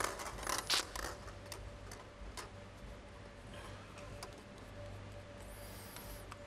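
Plastic draw balls clicking against each other and the clear bowl as one is picked out, then a short high squeak as the plastic ball is twisted open near the end. A low steady hum runs underneath.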